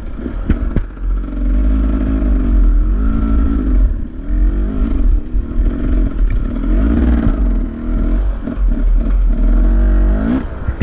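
Dirt bike engine revved in repeated bursts, its pitch rising and falling over and over above a steady low rumble, as the bike sits tipped over and stuck on a steep hill climb. A couple of sharp knocks come just after the start.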